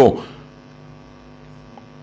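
A man's speech breaks off right at the start, leaving a faint, steady electrical mains hum, one low buzzing tone with its overtones, on the recording.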